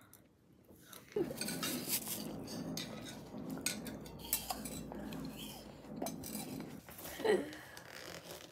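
Metal cutlery clinking and scraping against plates and a glass dish, starting about a second in and continuing in many small, irregular taps.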